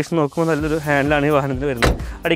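A single loud slam near the end as the Tata Yodha pickup's cab door is shut, over a man talking.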